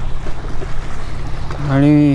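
Steady low outdoor rumble with no clear single source, and a man's voice beginning near the end.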